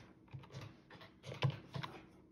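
Buttons of a plastic desktop calculator being pressed: an irregular run of about eight light clicks as figures are totalled.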